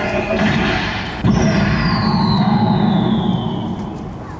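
Show soundtrack from loudspeakers while the Unicorn Gundam statue transforms: a sudden heavy hit about a second in, then a long whine falling in pitch over a low rumble.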